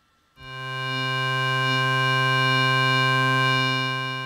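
Korg Kronos MOD-7 synthesizer patch sounding one sustained low note: a bright, buzzy sawtooth tone with FM from a second operator. It swells in about half a second in, holds steady, and begins to fade near the end.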